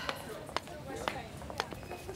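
Soft footsteps on a hard floor, a few light steps about two a second, over quiet room tone.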